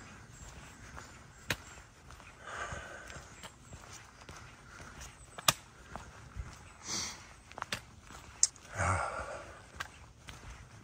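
Footsteps of a hiker walking a dirt trail strewn with dry fallen leaves, with a few sharp clicks standing out as the loudest sounds.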